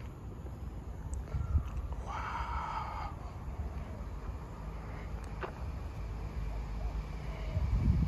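Outdoor ambience dominated by a low rumble of wind on the microphone, which swells near the end. About two seconds in, a brief pitched call lasts about a second.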